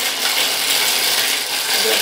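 Small shells rattling and clattering continuously as they are shaken in a wooden bowl.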